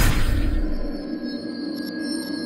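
Eerie, tense film score: a swell peaks at the very start and dies away within about a second, leaving steady held tones.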